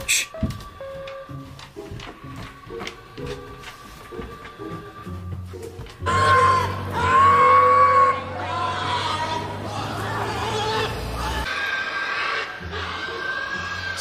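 Pigs squealing at slaughter, loud high cries starting about six seconds in and going on through the rest, over background music.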